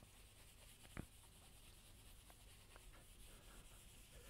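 Near silence with faint rubbing of graphite on paper as the background is shaded in circular strokes, and one small click about a second in.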